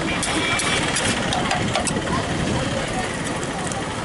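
Busy roadside street noise: engines idling and people talking, with a few sharp clinks of a steel spoon against the metal serving tray.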